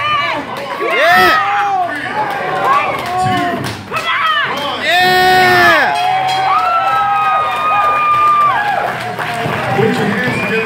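Spectators shouting and cheering at an amateur boxing bout, many voices yelling over one another, with one long held yell about seven seconds in.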